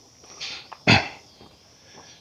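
A man's short, sharp breath through the nose about a second in, a snort-like exhale, with a fainter breath just before it.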